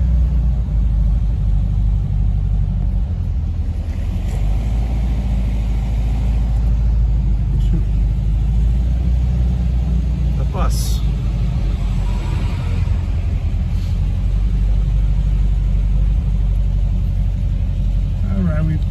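Steady low rumble of a vehicle's engine and road noise heard from inside the cabin while it moves slowly in traffic, with a brief squeal-like sweep about eleven seconds in.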